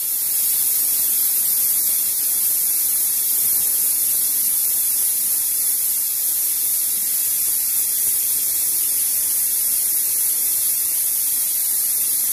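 Steady high hiss of steam escaping from an aluminium pressure cooker's weighted valve while it cooks under pressure on a gas burner.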